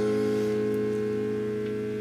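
Electric guitar chord ringing on through a Traynor YCV40 valve combo amp and slowly fading. The amp keeps sounding although its standby button is engaged: the standby doesn't cut the HT, which the repairer suspects is a shorted FET in the standby switching circuit.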